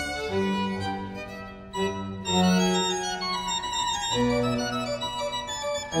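Pipe organ playing a Baroque concerto movement in held, sustained notes. The music drops away briefly about two seconds in, then a louder phrase comes in.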